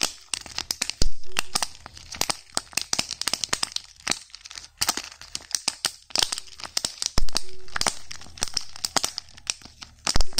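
Hard plastic candy-egg shells clicking, tapping and scraping against each other in the hands, with crinkling of wrappers throughout. Two heavier knocks stand out, about a second in and about seven seconds in.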